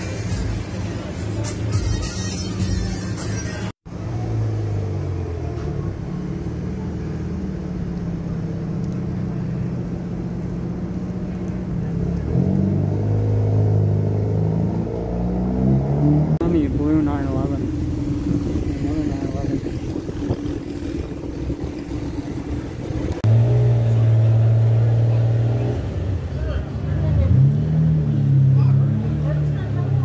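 Car engines running and revving as cars pull away one after another, the pitch rising and falling at intervals, with a loud rev from a little past two-thirds in until near the end.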